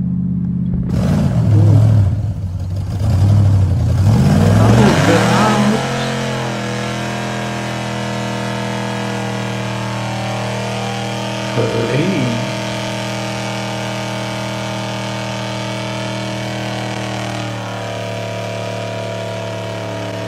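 Supercharged V8 muscle car doing a burnout. Its engine revs hard in rising and falling sweeps for the first few seconds, then holds steady high revs with the rear tyres spinning, easing off slightly near the end.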